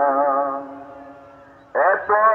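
A voice singing a devotional song about Medina: one long note held and fading away, then the next line starting just before the end.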